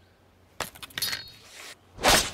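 A quick clatter of hard knocks and clinks with a brief metallic ring, starting about half a second in, as wood and an axe are handled. At the very end, the start of a heavy axe blow into a log.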